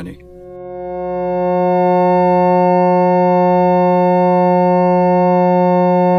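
An F-sharp major chord of steady, pure electronic tones built on 180 cycles per second and its multiples (360, 540, 720, 900 Hz). The lowest tone is the loudest. The chord fades in over the first two seconds, then holds.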